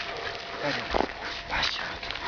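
A dog gives short vocal sounds, with a man's brief word about a second in.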